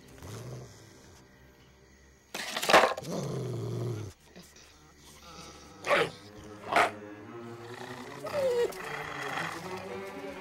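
A large dog snarling and growling for about two seconds, then two short sharp barks almost a second apart, a menacing, aggressive dog at the pen.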